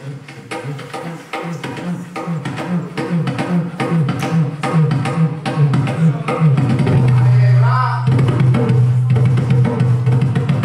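Balsié, a small Dominican hand drum, played solo in a quick, dense rhythm. Its low pitch steps up and down from stroke to stroke, giving the talking-drum sound. A held low note sounds about seven seconds in.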